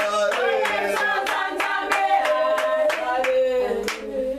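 A church congregation singing a worship song with steady rhythmic hand clapping, about three claps a second.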